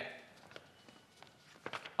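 A few faint, irregularly spaced taps over quiet room tone.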